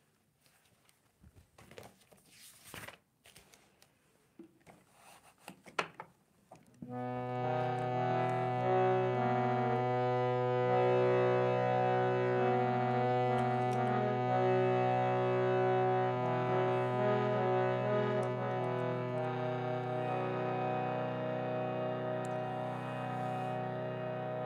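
A few soft rustles and knocks, then about seven seconds in a harmonium starts: sustained reed chords over a held low drone note, with the upper notes moving as a melody.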